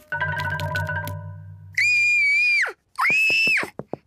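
A short cartoon music cue with a low pulsing note, then two loud, high-pitched screams of fright in a cartoon girl's voice: the first held for about a second and dropping away at its end, the second shorter.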